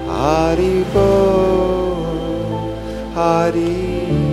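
A man singing a devotional mantra over held accompanying tones. His voice slides up into a phrase near the start, and a second phrase comes about three seconds in.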